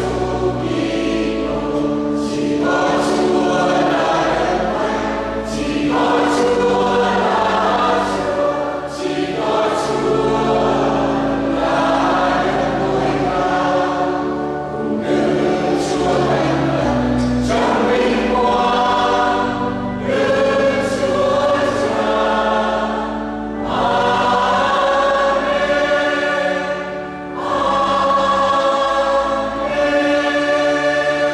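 A mixed choir of women and men singing a hymn in parts, in sustained phrases with short breaks between them.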